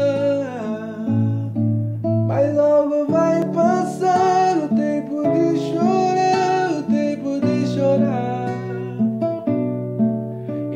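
Acoustic guitar playing the slow instrumental introduction to a hymn, with plucked chords under a held melody line.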